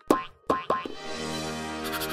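Cartoon sound effects: three short springy sounds in quick succession as a heap of blue balls tumbles into place, followed by a steady held music chord from about a second in.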